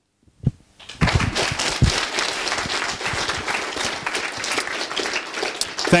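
Audience applauding: a crowd of people clapping, starting about a second in after a brief quiet.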